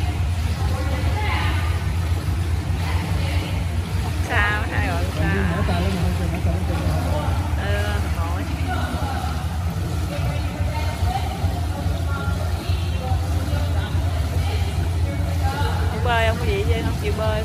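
Indoor swimming pool hall ambience: scattered voices echo over a steady low hum.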